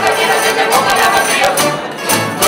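Canarian folk music: a group singing together to strummed guitars and Canarian lutes, with a tambourine.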